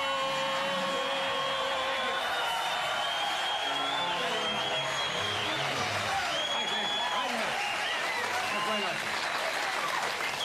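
Studio audience applauding and cheering, with whoops, while the house band plays out the opening theme. A held band note carries through the first couple of seconds.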